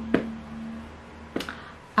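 A faint, steady closed-mouth hum from a woman trails off in a pause in her talk, with a light click just after it begins and two more about a second and a half in.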